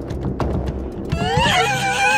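Eerie low music drone with a few sharp knocks. About a second in, a loud, high, wavering wail begins, rising quickly and then sliding slowly down, and carries on past the end.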